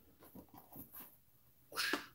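Faint soft handling noises of a collapsible camping bowl being pulled open and held up, then a short breathy hiss near the end.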